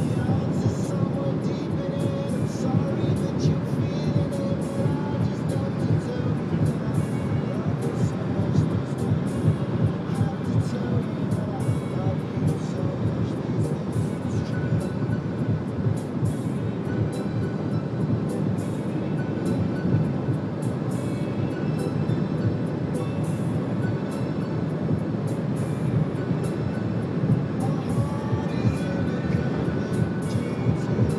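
Steady road and wind noise of a moving car, with music and a voice faintly under it.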